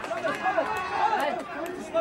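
Several men's voices shouting and chattering over one another during a goal celebration on a football pitch.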